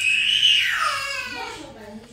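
A woman's high-pitched, closed-mouth 'mmm' of enjoyment while chewing a bite of strawberry and whipped-cream biscuit, rising at first and then sliding down in pitch over about a second and a half before fading.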